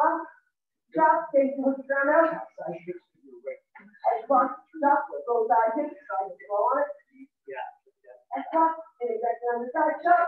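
A person's voice talking almost continuously in short phrases with brief pauses.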